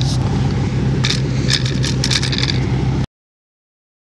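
A car engine idling steadily, with a few light scrapes and clicks about one to two and a half seconds in. The sound cuts off abruptly about three seconds in, leaving silence.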